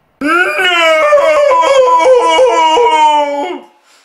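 A loud, drawn-out howling wail from a person's voice, lasting about three and a half seconds. Its pitch wavers up and down in quick steps, and it tails off near the end, like an anguished cry of protest.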